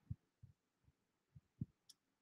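Near silence: room tone with a few faint, short low thuds and a brief tick near the end.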